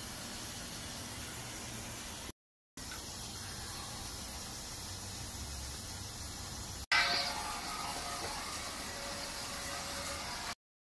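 A fog machine spraying fog: a steady hiss with a low hum under it. It cuts out briefly about two seconds in, and comes back louder and suddenly about seven seconds in.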